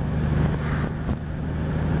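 Steady low engine and road drone inside the cabin of a moving 1998 Jeep Cherokee, with an even hiss of tyre and wind noise.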